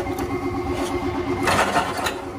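Electric meat grinder motor running with a steady, pulsing hum while the extruder's die plate is being unscrewed. About one and a half seconds in comes a short rattling clatter as the retaining ring comes off and the die plate drops into the pot of pellets.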